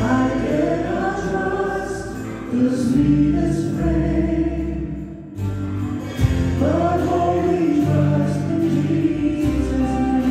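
Live worship song: several voices singing a held, slow melody together with a small band's accompaniment, with a short break just past the middle before the next sung line begins.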